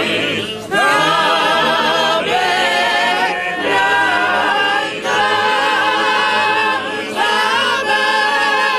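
A large group of trallalero singers performing Genoese polyphonic folk song unaccompanied, many voices in held, wavering chords. The singing breaks briefly between phrases, the first break about half a second in.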